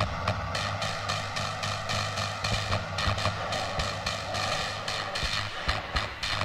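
Hardcore techno breakdown with the kick drum dropped out: a steady droning synth tone with thin, regular percussion ticks over it.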